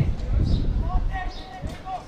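Unintelligible voices of players or spectators at an open-air football ground, with wind rumbling on the microphone that eases within the first half second. A faint high chirp sounds twice.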